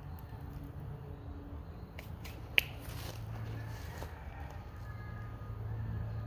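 A single sharp click about two and a half seconds in, with a few fainter clicks just before it, over a steady low rumble.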